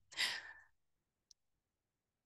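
A woman's short breathy sigh, about half a second long, followed by a faint click about a second later.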